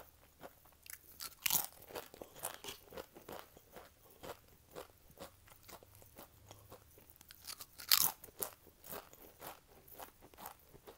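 Close-miked crunching of Pringles Wavy potato chips being bitten and chewed, with two loud bites, one about one and a half seconds in and one near eight seconds, and quieter crackling chews in between.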